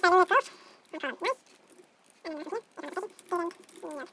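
An animal making a series of short, high-pitched whining cries, each a fraction of a second long, roughly one or two a second.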